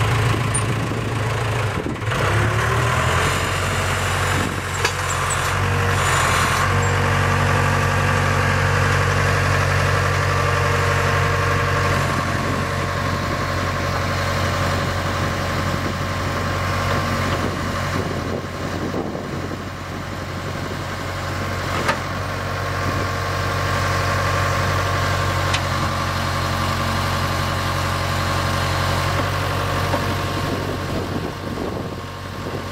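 Case 580K backhoe's 4-390 four-cylinder diesel engine running steadily at idle while the backhoe boom and bucket are worked, its note shifting slightly a few times. Two brief sharp clicks sound about five seconds in and again later on.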